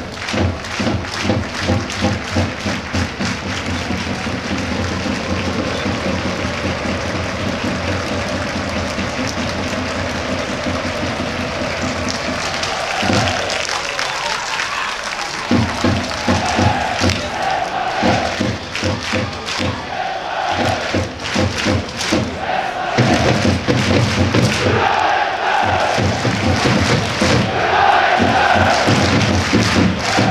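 A large crowd of football supporters chanting in unison over a steady beat of thuds. In the second half the chant comes in repeated phrases with short breaks between them and grows louder.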